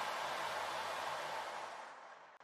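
A steady hiss of noise that starts suddenly and fades out near the end.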